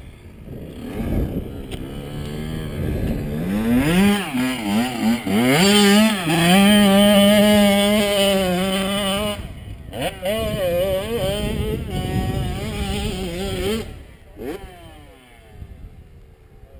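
Dirt bike engine revving up through the gears in a few rising steps, held at a steady pitch, then throttled off; it picks up again briefly and fades away near the end.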